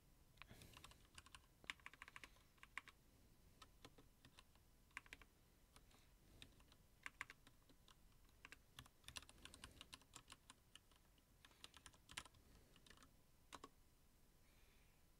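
Faint typing on a computer keyboard: irregular clusters of quick key clicks with short gaps between them.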